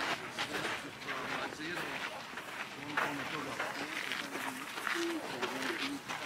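Indistinct voices of several people talking at a distance, with footsteps on a dirt path as a group walks.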